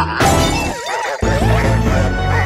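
Glass-shattering sound effect over a children's song backing track, a sudden crash a fraction of a second in. A wavering tone follows while the bass briefly drops out, then the music picks up again.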